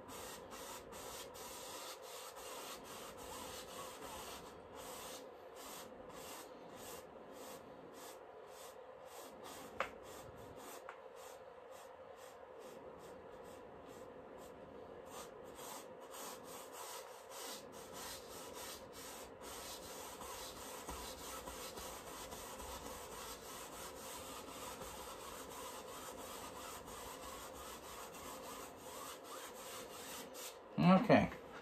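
A paintbrush's bristles rubbing and scrubbing over the canvas in quiet repeated strokes, blending wet paint.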